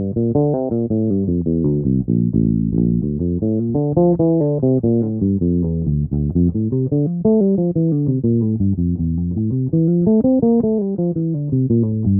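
Electric bass played fingerstyle in a continuous run of quick single notes, several a second: arpeggio and scale patterns over G minor 7.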